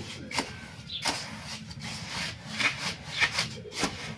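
A flat wooden block dragged again and again through a dry granular mix in a metal basin: about six gritty scraping strokes.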